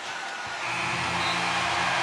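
Arena game-ending horn starting about half a second in and holding one steady buzzing tone as the game clock runs out, over crowd noise.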